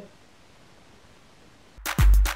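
Faint room tone, then electronic outro music with sharp drum hits starts suddenly just before the end.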